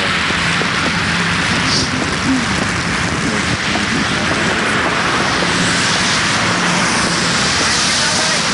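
Steady hiss of a wet street in the rain: car tyres on rain-soaked asphalt and falling rain, with a faint engine hum coming and going underneath.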